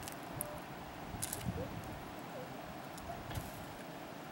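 A few faint clicks and ticks from metal kitchen tongs lifting the backbone off a cooked salmon on a paper plate, over a quiet steady outdoor background.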